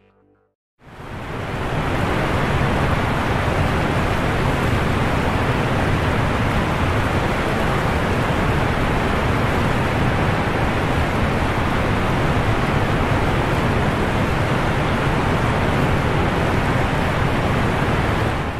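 A loud, steady rushing noise with no tones or rhythm in it, fading in about a second in.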